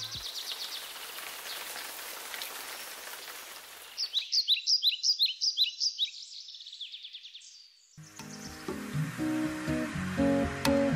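Steady patter of rain falling on water, followed by a songbird singing a quick run of high chirps. Acoustic guitar music comes in about two seconds before the end.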